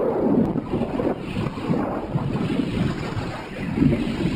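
Loud freefall airstream buffeting the camera's microphone: a dense, rushing wind noise that swells and dips unevenly.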